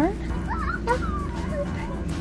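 A young child's brief, high-pitched wavering vocal sounds about half a second to a second in, over a steady background music bed.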